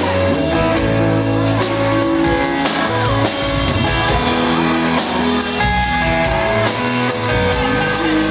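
A live rock band playing: electric guitar, electric bass and drum kit, with a steady beat of about two drum strikes a second.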